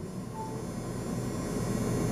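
A 150-watt car power inverter, plugged into the car's power socket, runs under the load of a charging phone with a steady hum and a high whine, loud enough to be called a loud noise. A short faint tone sounds about half a second in.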